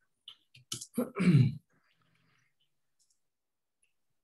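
A few soft keyboard clicks, then a person clearing their throat about a second in.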